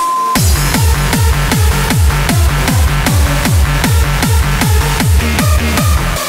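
UK bounce (donk) dance music: a fast, steady beat of deep kick-drum thumps and bass comes in a moment after the start, following a brief high held tone.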